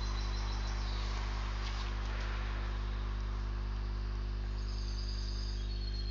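Steady electrical hum with a constant hiss: mains hum and its overtones picked up by the recording microphone, with no other sound over it.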